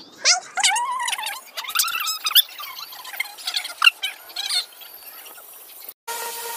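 Shih Tzu puppy whining in high-pitched, gliding cries: a run of them in the first couple of seconds, then a few shorter ones a little later.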